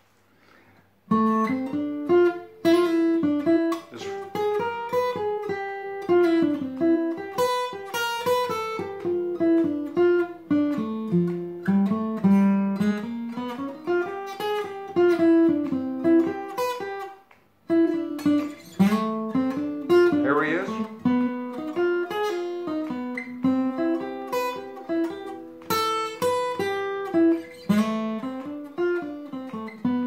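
Steel-string acoustic guitar playing a freely improvised jazz single-note line, notes plucked one after another, with a practised inversion figure worked in. It starts about a second in and pauses briefly just past halfway.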